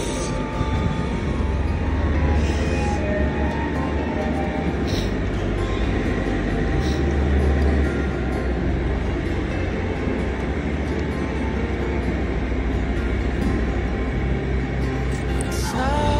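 Background music with a steady, deep bass.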